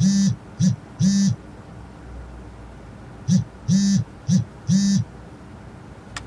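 A mobile phone vibrating, buzzing in a repeated short-long pattern with a rattle on top of each buzz. The buzzes come in two groups, with a gap of about two seconds between them.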